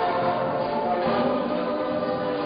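Music with several voices singing together in held notes that change pitch every half second or so.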